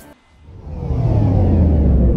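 A low rumbling swell fades up from near silence and keeps building, with faint falling tones running through it. It is the cinematic build-up sound effect that leads into an animated logo sting.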